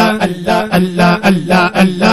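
A male voice chanting 'Allah' over and over in an even, fast rhythm, about two to three repetitions a second, as in a Sufi zikr.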